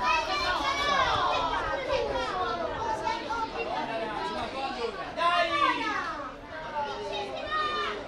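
Several children's voices shouting and calling out over one another, with chatter behind them. The calls come loudest near the start and again about five seconds in.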